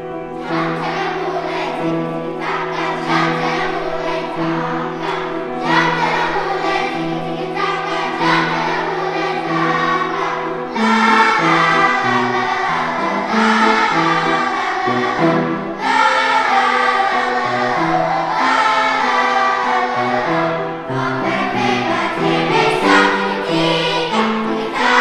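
Children's choir singing with piano accompaniment. The voices come in over the piano about half a second in and grow louder a little before halfway through.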